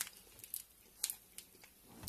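A few faint, sharp crunches and clicks, the clearest about a second in: a bite of Lion Bar being chewed, its wafer and crisped-rice filling crunching, with the wrapper handled.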